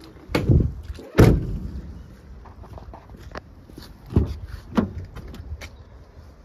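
Rear doors of a Ford Transit Custom van, fitted with slam locks, being shut: two loud bangs less than a second apart. A few seconds later come two lighter knocks with small clicks.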